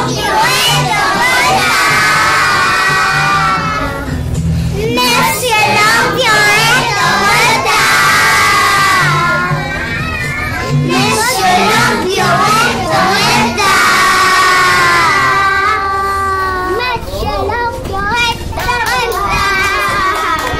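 A group of young children singing and shouting together, loudly, holding long high notes three times, with music playing underneath.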